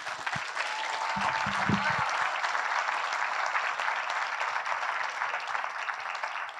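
Audience applauding steadily for several seconds, dying away near the end.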